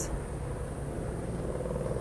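A steady low rumble of background noise with no distinct events.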